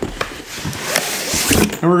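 Cardboard box being opened by hand: cardboard scraping and rubbing in a rising rush, with a few light knocks.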